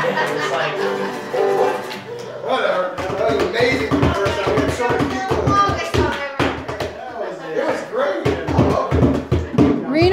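Acoustic guitar and other plucked string instruments ringing on a held chord that stops about two seconds in. Then laughter and excited voices with some hand clapping.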